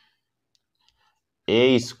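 A marker writing on the board, heard only as a few faint ticks in near silence. Then a man starts speaking about one and a half seconds in.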